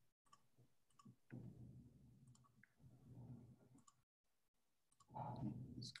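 Faint, irregular computer mouse clicks over near silence, with a soft low murmur between them; a louder voice sound comes in about five seconds in.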